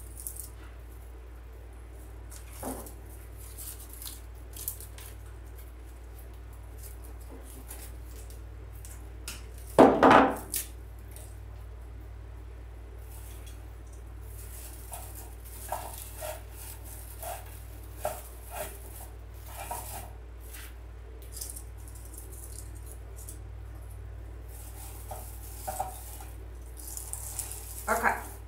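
Handling of artificial pine picks on a wooden table: scattered clicks, clinks and rustles as stems are cut and pushed into a candle ring, over a steady low hum. One loud knock about ten seconds in.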